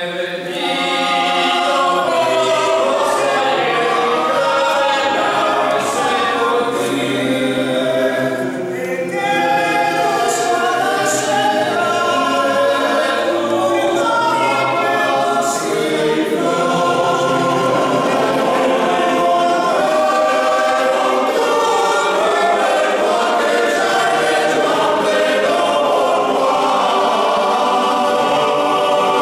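Male voice choir singing a cappella in several parts, the voices coming in together right at the start and carrying on steadily.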